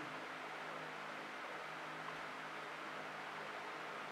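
Steady background hiss with a faint low hum: quiet room tone with no distinct events.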